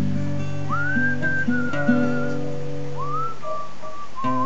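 A person whistling the melody over strummed acoustic guitar chords. There are two whistled phrases, each starting with an upward slide into a held note that wavers slightly.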